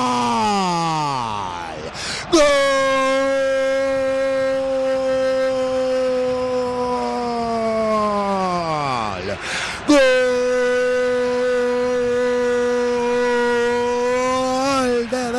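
Radio football commentator's long held goal cry, sung out on a steady high note in three long breaths. Each breath slides down in pitch as it runs out, with a quick gasp before the next.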